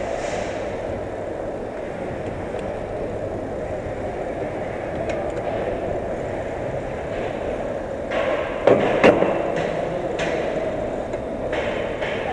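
Steady rolling noise of a mountain bike ridden over a smooth concrete floor, with two sharp knocks or rattles from the bike close together about nine seconds in.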